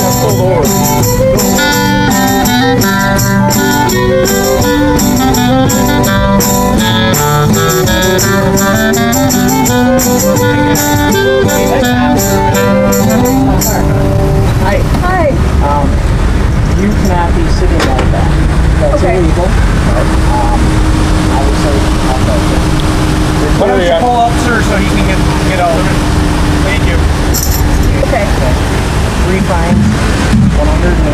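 Klezmer band music plays for about the first half and stops suddenly. After it comes steady street traffic noise with a few voices.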